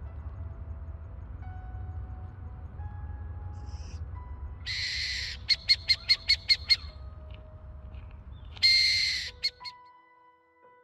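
Burrowing owl chicks calling: a loud rasping hiss about five seconds in, then a quick run of about seven short sharp calls, and a second rasping hiss near the end followed by two short calls.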